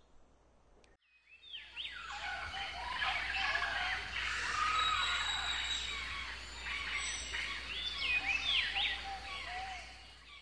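Many birds chirping and calling over one another, with a steady low rumble underneath. It fades in about a second in and fades out near the end.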